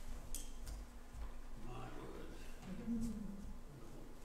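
Quiet room sound after the music stops: a few light clicks and a short, faint murmur of a voice in the middle, over a steady low hum.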